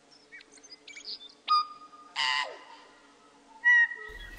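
Birds calling: a string of short chirps and sweeping whistles, with a clear whistled note about a second and a half in and a louder, harsher call just after two seconds.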